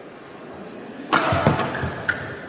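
Badminton rally in an arena: quiet hall noise, then about a second in a sudden loud burst of sharp racket strikes on the shuttlecock and crowd noise.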